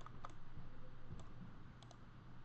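A few faint, sharp computer-mouse clicks, scattered and with two close together near the end, over a low steady hum.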